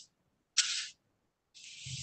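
Dead silence on a video-call audio line, broken about half a second in by one short, high hiss. Near the end a fainter hiss rises and runs into a voice.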